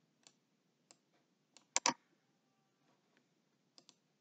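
Faint, scattered clicking at a computer, about six light clicks spread unevenly, with a louder double click a little before halfway.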